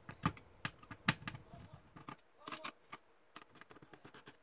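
Light, irregular clicks and taps of a small Phillips screwdriver working screws at a laptop's display hinge, with a quick cluster of clicks about two and a half seconds in.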